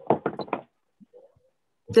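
A quick run of knocks, about half a second long, near the start, followed by a couple of faint ticks.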